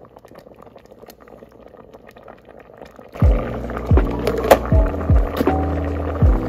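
Quiet wet stirring and light scraping of a wooden spatula through soft rice porridge in a rice cooker's metal pot. About three seconds in, background music with a deep, regular kick-drum beat starts and becomes the loudest sound.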